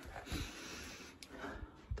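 Faint handling noise: soft rustling with a light click about a second in and a few dull low thumps.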